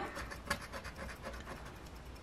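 A coin scratching the coating off a lottery scratch-off ticket: faint, rapid short scrapes, with a slightly sharper scrape about half a second in.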